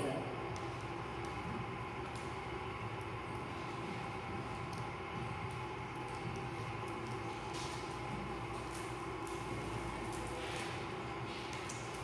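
Fingernails picking and scratching at clear adhesive tape stuck to a tabletop, giving a few faint scratches and ticks over a steady background hum.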